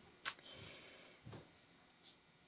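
A quick, quiet sniff, followed by about a second of faint soft hissing.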